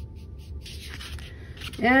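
Short, soft brushing strokes of a paintbrush with acrylic paint on canvas, laying in feather strokes; a few quick faint strokes, then one longer brush sweep just under a second in.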